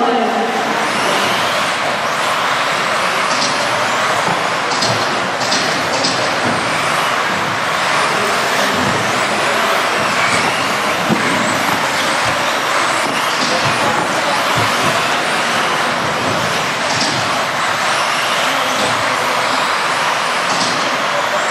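Several 1/10-scale electric 2WD modified buggies racing on an indoor carpet track: a steady, dense mix of motor whine and tyre noise, with occasional short clicks.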